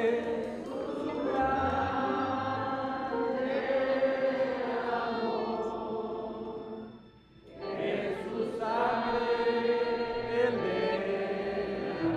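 Congregation singing a Spanish-language hymn, led by a man's voice over a microphone, in long held phrases; the singing breaks off for a moment about seven seconds in, then carries on.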